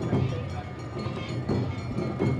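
Awa Odori festival band (narimono) playing: drum and hand-gong strokes at about two a second in the dance's driving two-beat rhythm, with a metallic, ringing clang.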